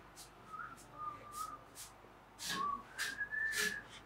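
A man softly whistling a few held notes, the last one higher and longest, with faint short swishes of a broom between them.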